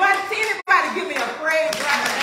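Hand clapping mixed with loud voices from a church congregation.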